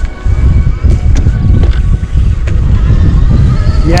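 Heavy wind buffeting on the microphone of a camera worn by a rider going fast on an electric mountain bike, a loud rumble that starts about a quarter second in and keeps on.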